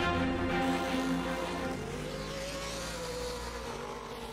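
Short-course off-road race truck's engine running hard as it slides through a dirt turn, mixed with background music. The sound fades steadily toward the end.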